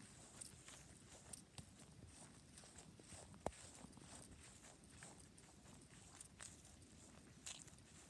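Near silence, with faint footsteps on grass as someone walks across a lawn, and one sharper click about three and a half seconds in.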